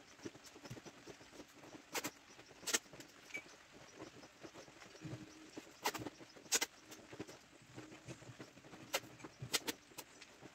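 Sharp clicks of hand work on ceramic tile, mostly in pairs about 0.7 s apart, three times, over a faint low hum.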